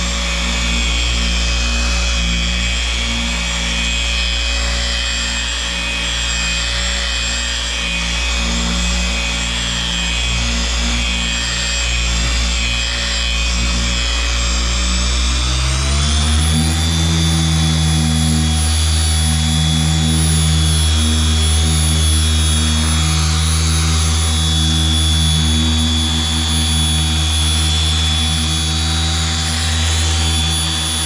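Variable-speed electric polisher running steadily with a wool cutting pad on car paint as it works in cutting compound. About halfway through, its motor pitch rises over a second and holds higher as the speed is turned up to buff the compound out.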